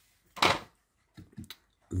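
Handling noise on a slate tile placemat: one short, loud knock about half a second in, then a few lighter taps.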